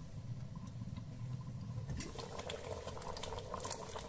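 A pot of fava simmering, the thick pulse mixture bubbling and popping softly. The bubbling gets a little fuller about halfway through.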